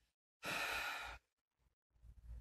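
A woman's sigh: one breathy exhale of under a second, close to the microphone.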